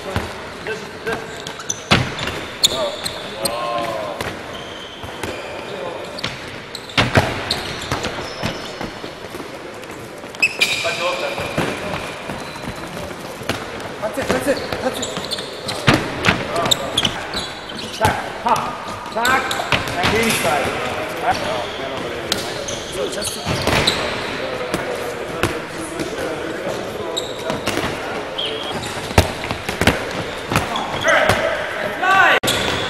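Handballs bouncing and thudding on the wooden floor of a large sports hall, scattered throughout, with players' voices chattering in the background.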